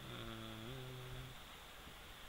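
A man's short, soft closed-mouth hum ("mmm"), held about a second and a half, with a small upward step in pitch halfway through.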